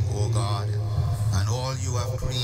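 A priest's voice intoning a prayer of the Mass in a drawn-out, chant-like delivery, with a steady low hum beneath it.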